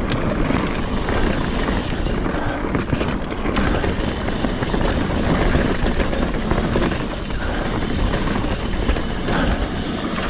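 Trek Fuel EX 7 mountain bike riding down a dry dirt forest trail: knobby Maxxis Minion tyres rolling over dirt and roots, with continual small clicks and rattles from the bike over the rough ground.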